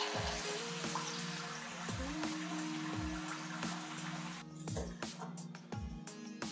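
Samosas deep-frying in hot oil in a wok, a steady bubbling sizzle that drops away about four and a half seconds in, under gentle background music.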